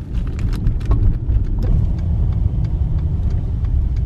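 Car cabin road noise: a steady low rumble of the engine and tyres rolling over a snow-covered road, with scattered short crackling clicks throughout.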